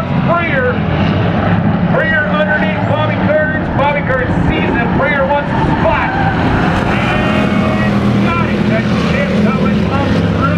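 Race car engines running together as a pack of cars laps an oval track, with indistinct talk over them.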